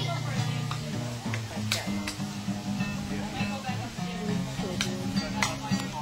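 Acoustic guitar played solo without singing: a run of picked low notes and chords that change every fraction of a second, with a couple of sharp clicks.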